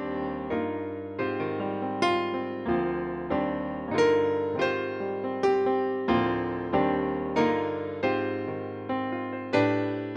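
Piano music: notes and chords struck at a steady pace of about three every two seconds, each ringing and fading before the next.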